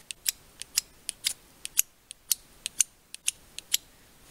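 Ferro rod (fire steel) scraped again and again with the spine of a stock Mora knife: a run of quick, short scrapes, about four a second. The factory spine is not sharp-edged enough to bite, so the strokes throw hardly a spark.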